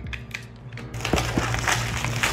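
Cardboard retail box being opened by hand: a tab on the box is pulled and the card is rubbed and handled. From about a second in there is a dense, crackly rasp with small clicks.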